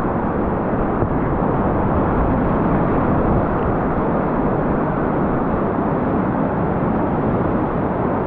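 Whitewater rapids rushing and churning in a steady, loud, unbroken noise.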